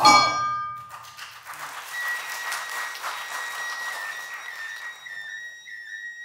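An Awa odori hayashi band stops on a loud final stroke, followed by a few seconds of applause. A shinobue bamboo flute then holds a long high note from about two seconds in and, near the end, moves into a stepping melody that opens the next tune.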